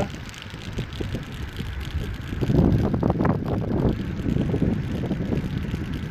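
Wind buffeting a handheld microphone while riding a bicycle, a low rumble that grows louder about two seconds in.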